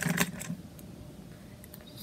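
A plastic toy school bus moved across a wooden tabletop, giving a few clicks and a low rattle in the first half second, then faint room tone.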